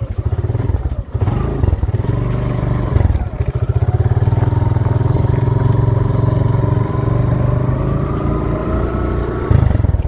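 Suzuki Gixxer motorcycle's single-cylinder engine running on the move. The note dips briefly near the start, about a second in and about three seconds in, then holds steady and climbs slowly in pitch.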